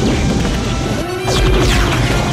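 Several falling-pitch laser-blaster zaps and a crashing explosion about a second in, with orchestral film score underneath. The blaster and explosion effects are homemade.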